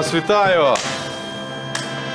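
Short brass music sting: a note slides down in pitch, then settles into a held chord.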